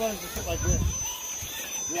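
People talking and laughing, with a short low rumble about half a second in.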